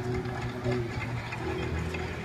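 Background noise of a large indoor tournament hall: a steady low hum with faint distant voices.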